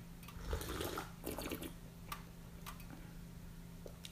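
A person slurping a sip of tea from a small teacup: a noisy slurp of about a second, starting half a second in, then a few faint clicks.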